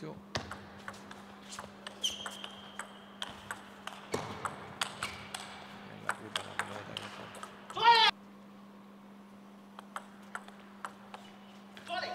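Table tennis rally: the ball ticks off rubber bats and the table in a quick run of sharp clicks for about seven and a half seconds. A short loud shout comes about eight seconds in, and then only a few scattered taps over a faint steady hum.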